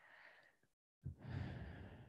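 A soft, sigh-like out-breath into a headset microphone, starting about a second in, after a moment where the audio drops out completely.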